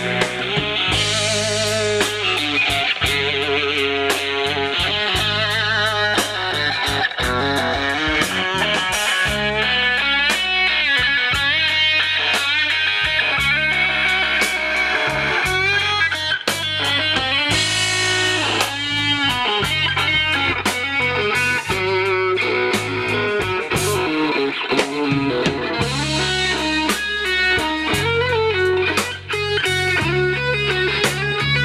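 Live rock band playing, with an electric guitar to the fore over a drum kit.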